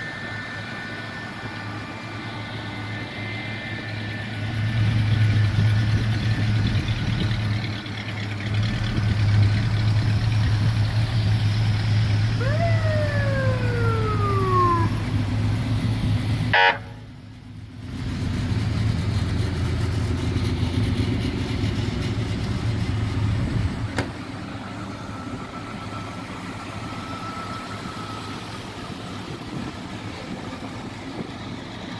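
Vintage police cars' engines running in a queued line, with a low steady rumble that swells up for most of the middle. About halfway through, a siren winds down once, gliding from a higher to a lower pitch over a couple of seconds; a sharp click and a brief dropout follow.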